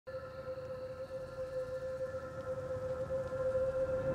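Opening drone of a trailer score: one sustained, steady tone with fainter overtones over a low rumble, slowly swelling in loudness.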